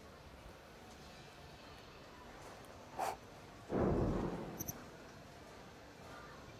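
Bowling ball striking the rack of pins: one sudden crash of pins scattering just before two-thirds of the way through, fading over about a second, with a sharp click just before it. The shot is a strike.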